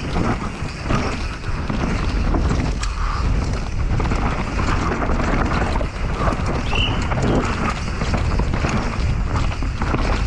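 Wind rushing over the camera microphone at speed, with a mountain bike's knobby tyres rumbling over a dirt and root trail and the bike rattling and knocking over the bumps of a fast downhill descent.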